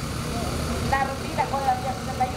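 Voices of people talking in the background over a steady low rumble.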